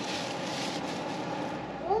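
A steady rushing background noise with no clear source, cut off just at the end by a boy's voice.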